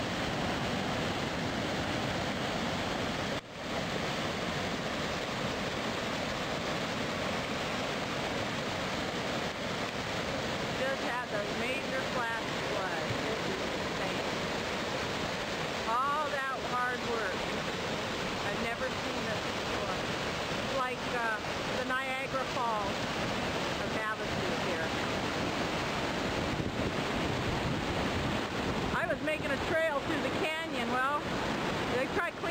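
Flash-flood water rushing through a desert wash: a steady, dense churn of fast floodwater, with water pouring over a retaining wall. The sound dips briefly about three and a half seconds in.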